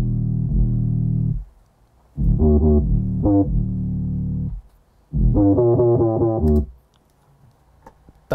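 UK drill 808 bass pattern played solo: deep, slightly distorted 808 bass notes, some sliding in pitch, in three short phrases with brief breaks between them.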